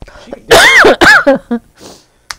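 A woman laughing out loud in two bursts close together.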